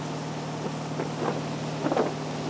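Motorboat engine running steadily while towing a wakeboarder, with rushing wake water and wind on the microphone. A few brief louder bursts come about a second in and near the end.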